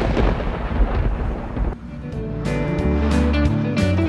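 A thunder crash rumbles loudly and stops abruptly about two seconds in. Music with steady sustained notes then comes in and builds.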